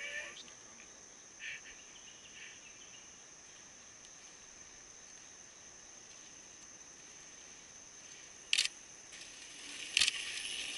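Steady high-pitched insect chorus in summer woodland. About eight and a half seconds in there is a brief sharp clatter, and near the end the sound of a mountain bike's tyres on the dirt trail grows as the bike comes closer.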